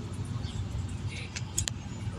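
Low, uneven outdoor rumble, with a few short sharp clicks about one and a half seconds in.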